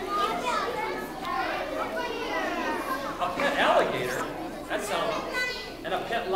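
A crowd of young children talking over one another in a large hall, a constant jumble of overlapping voices.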